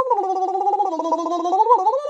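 A woman's voice making a drawn-out, rough, wavering vocal noise on one held pitch, with a short upward lift about three-quarters of the way through, a mock sound effect rather than words.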